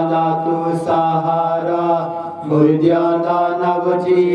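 A man chanting a prayer into a microphone, in long held notes with a short break about two seconds in. It is a sung Punjabi funeral litany asking the Lord to grant the dead peace and eternal life.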